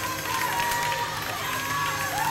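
Church congregation clapping, with voices calling out, over music with sustained low tones.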